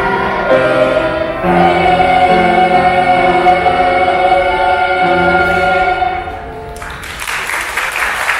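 Children's choir singing, holding a long sustained chord from about a second and a half in. Near the end the singing stops and applause breaks out.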